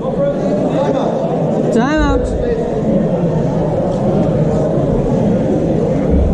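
Voices echoing in a large sports hall: steady overlapping chatter, with one loud call about two seconds in.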